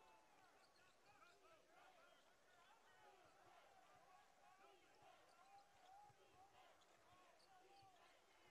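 Near silence: very faint basketball-arena sound, a steady murmur of many voices with a ball bouncing on the hardwood court.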